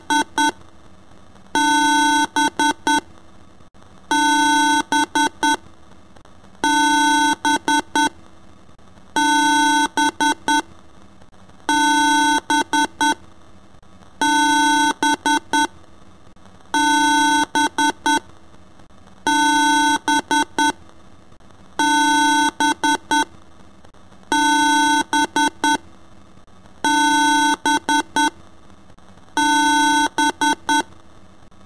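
A steady electronic tone edited into a looping rhythm. Each cycle is a held note of about a second followed by three or four quick stuttered repeats, and the cycle repeats about every two and a half seconds.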